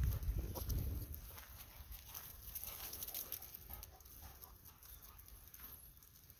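Footsteps of a walker and two golden retrievers' paws on a dirt path strewn with fallen leaves, a run of quick, irregular crunches and pats. A low rumble on the microphone in the first second.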